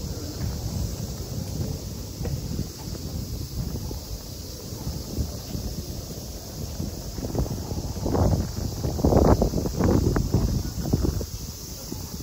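Street ambience recorded on the move: wind buffeting the microphone as a low, uneven rumble, with footsteps. Near the end comes a few seconds of louder knocks and noise.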